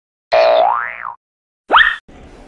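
Comic cartoon sound effects: a pitched sound that slides up and back down, then a short, sharp rising boing just before the cut.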